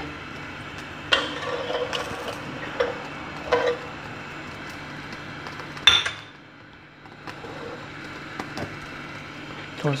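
A metal utensil scraping and clinking against a steel cooking pot of milk on the stove, with one sharp clink about six seconds in, over a steady low hum.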